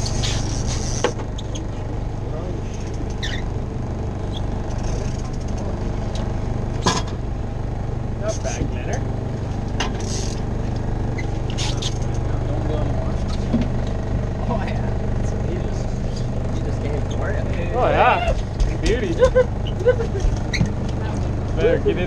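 Charter fishing boat's engine running steadily, a low even hum, with a few short sharp clicks.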